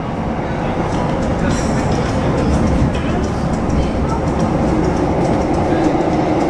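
Singapore MRT metro train running, heard from inside the carriage: a steady rumble with faint rail clicks, and a hum that grows stronger near the end.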